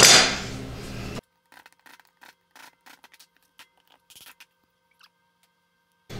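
Screwdriver prying a cast epoxy resin bowl out of its mould: a sharp crack at the start that fades over about a second, then faint scratches and clicks.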